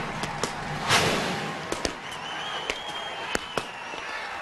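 Soldiers' boots stamping on the paved parade ground: sharp, irregular impacts, the loudest about a second in, over a fading crowd murmur.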